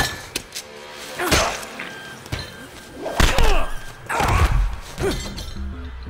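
Film fight sound effects: a run of about five heavy hits and crashes, with something smashing, over background score music.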